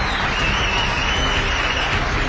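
Studio audience applauding and cheering.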